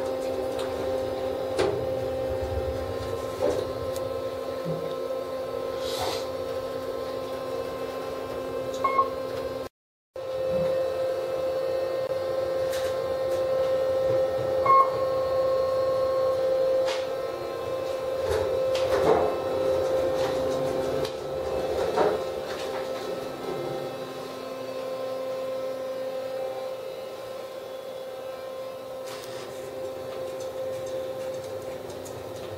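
Kone elevator cab running, with a steady hum from its drive and cab fan, scattered light clicks, and a couple of short high beeps.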